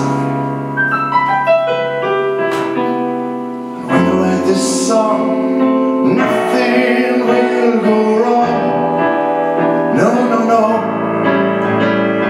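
Solo piano playing an instrumental passage between sung lines: a run of single notes over the first few seconds, then full sustained chords from about four seconds in.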